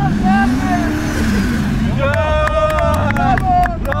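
A drift car's engine revving up and easing back down as the car slides around a cone. About two seconds in comes a long, high-pitched squeal, and near the end there is laughter and shouts of "bravo".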